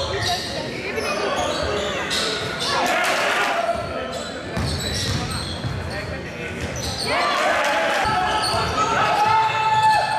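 Basketball game in a large sports hall: the ball bouncing, sneakers squeaking on the hall floor in short chirps, and players' and spectators' voices, all echoing.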